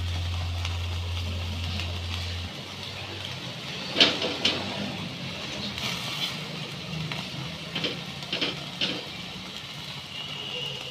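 Chicken roasting over an open gas-burner flame on a wire grill rack: a low steady hum stops about two and a half seconds in, then scattered sharp clicks and pops follow.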